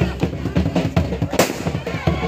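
Jhumur dance drumming: a hand-beaten barrel drum played in a quick, steady rhythm of about four strokes a second. A single sharp crack cuts through about one and a half seconds in.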